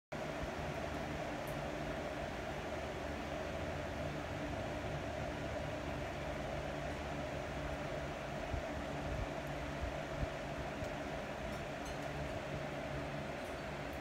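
A steady mechanical hum over a hiss, unchanging throughout, with a couple of faint soft knocks about eight and ten seconds in.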